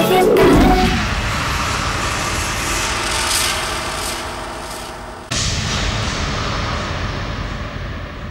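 Dramatic soundtrack effects: a falling swoosh, then a long noisy whoosh that slowly fades, broken off about five seconds in by a second sudden whoosh that also fades away.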